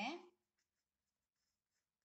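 Faint scratching of a pen writing a word on paper.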